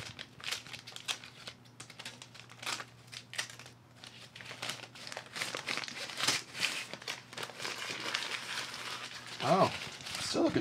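Brown paper wrapping crinkling and tearing as it is pulled off an electric guitar's neck: a continuous run of irregular rustles and crackles. A brief vocal sound comes near the end, the loudest moment.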